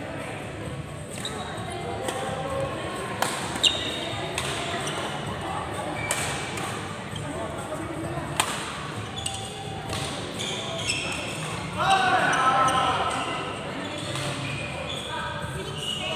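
Badminton doubles rally in a sports hall: sharp racket-on-shuttlecock hits every second or two, with footfalls on the court floor, over background voices in the hall. A louder voice rises above the chatter about twelve seconds in.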